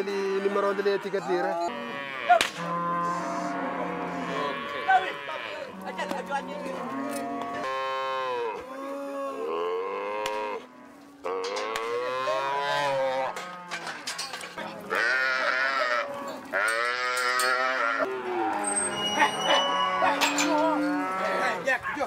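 Herd of cattle mooing: many long calls overlapping one after another, with a sharp knock about two seconds in.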